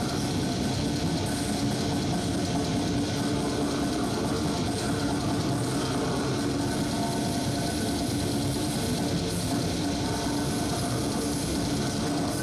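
Live death metal band playing loud, with heavily distorted guitars, bass and drums blurring into a dense, steady roar.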